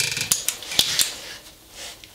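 Paddle switch and lock-off lever of a Hercules 11A angle grinder being worked by thick cowhide-gloved hands, with the motor not running: a quick run of clicks and rattles in the first second, then fainter handling. The gloves make the paddle awkward to engage.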